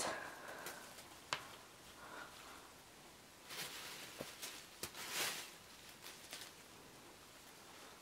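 Faint rustling of fresh cilantro sprigs and a plastic produce bag as they are handled, in a few short bursts, with some soft clicks between.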